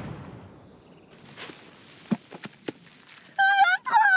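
The rumble of an explosion in the field dies away, followed by a quiet stretch with a few scattered thuds of earth falling back. Near the end a woman's high voice cries out.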